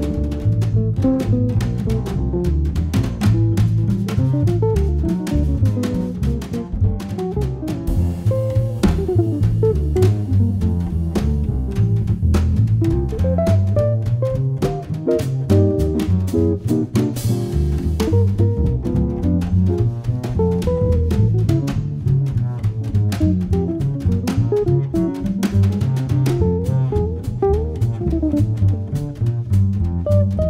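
Jazz trio playing: an archtop hollow-body guitar, a plucked double bass and a drum kit.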